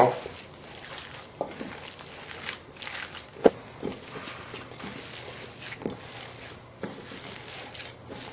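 Hands kneading ground meat with a spice-and-oil mixture in a stainless steel bowl: soft, irregular handling noise with a few sharper clicks, the loudest about three and a half seconds in.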